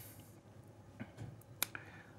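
Quiet pause with a few faint, sharp clicks, the sharpest about one and a half seconds in, after a soft hiss that fades at the very start.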